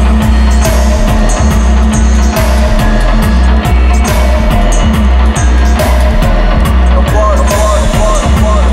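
Steppers-style dub reggae played loud, live-mixed on a dub mixing desk: a deep, heavy bass line under a steady, even beat.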